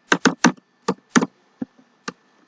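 Keystrokes on a computer keyboard: about six separate key presses, unevenly spaced.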